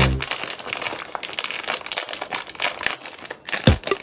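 Clear plastic packaging crinkling and crackling in irregular bursts as hands unwrap a squishy toy can from it. Background music with a beat comes back near the end.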